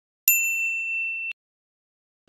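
A single bright ding sound effect: one bell-like tone that starts about a quarter second in, holds for about a second and cuts off abruptly.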